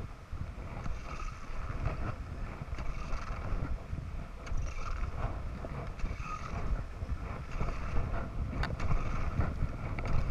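Wind buffeting the microphone of a camera moving downhill on a skier, a steady low rumble, over the hiss and scrape of skis running on groomed snow, with a few sharper edge scrapes near the end.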